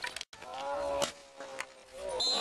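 A long, drawn-out yell from a person, held on one pitch and sinking slightly, with two sharp clacks partway through.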